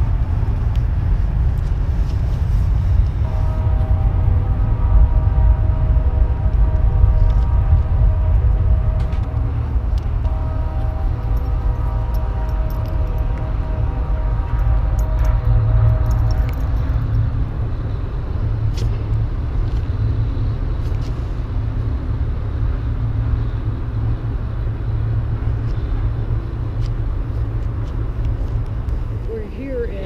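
Steady low rumble of road traffic. A steady pitched engine hum joins it from about three seconds in and fades out around seventeen seconds.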